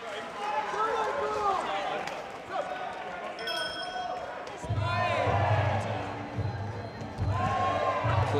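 Voices calling out in a fight hall, then a short bell ring about three and a half seconds in, marking the start of the round. From about five seconds a low, pulsing beat sets in.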